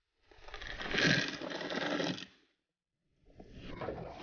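Boat anchor and its galvanised chain going over the bow into the water, the chain rattling for about two seconds before the sound stops abruptly.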